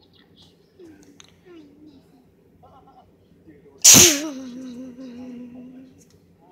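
A loud sneeze about four seconds in, followed by a drawn-out voiced sound that dips in pitch and then holds steady for about a second and a half.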